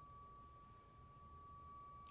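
A single pipe of a church pipe organ sounding on its own as a faint, steady high tone with no key played: a cipher, where something in the organ is stuck so the pipe keeps speaking.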